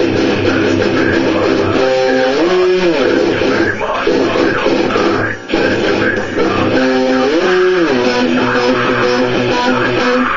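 Electric guitar playing held chords of a song, twice sliding up the neck and back down, with a brief break about five and a half seconds in.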